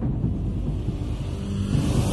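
Logo intro sting: a steady deep rumbling drone, with a brighter swell starting to rise right at the end as it leads into theme music.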